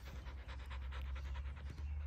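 A white domestic duck panting like a dog: a faint, rapid, evenly paced run of short breaths.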